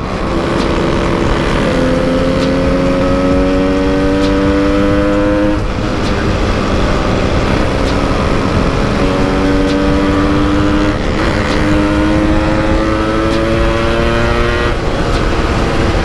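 Yamaha RX-King's two-stroke single-cylinder engine pulling hard under acceleration. The pitch climbs for a few seconds, drops back about five and a half seconds in, then climbs again through most of the rest.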